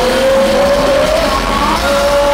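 Live heavy metal band playing loud, with a long held note sliding slowly upward for about a second and a higher note rising near the end.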